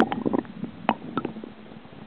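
Water sloshing and gurgling around a partly submerged camera, muffled, with irregular knocks that are loudest in the first half second and two sharp clicks about a second in.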